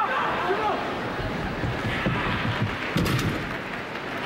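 A gymnast's bare feet thudding in quick succession down a vault runway, ending about three seconds in with a sharp bang as he hits the springboard and the vault table, over the murmur of an arena crowd.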